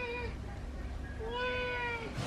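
A tabby kitten meowing: the tail of one meow, then a second, longer meow starting about a second in and held at a steady pitch.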